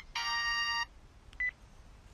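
Telephone ringing: an electronic ring tone that sounds for under a second, followed by a single short high beep about a second and a half in.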